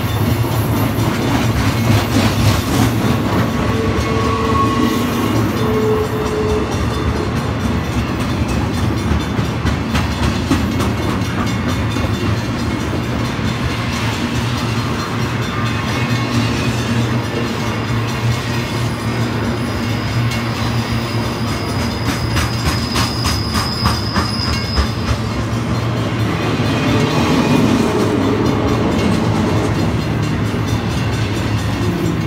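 Double-stack intermodal container cars of a Union Pacific freight train rolling past: a steady loud rumble with the wheels clicking over the rail. A thin high squeal holds for several seconds past the middle.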